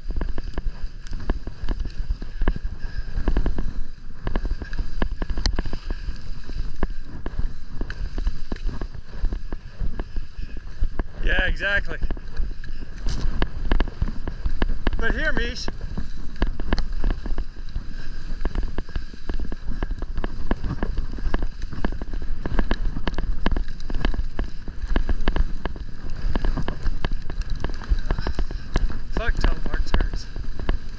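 Skis running fast down a snow piste: a steady rush of wind on the microphone over the scrape and chatter of ski edges on the snow. Twice near the middle, a brief wavering voice-like call cuts through.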